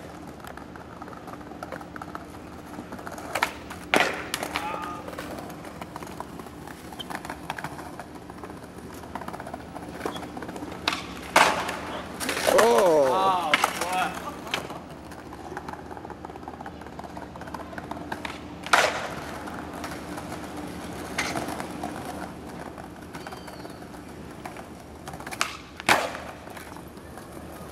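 Skateboard on stone paving: several sharp clacks from the board popping, landing or striking the ground, with wheels rolling in between. A voice calls out about twelve seconds in.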